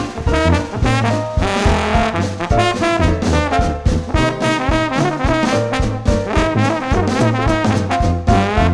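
Background music: an instrumental passage of a traditional jazz band playing over a steady beat.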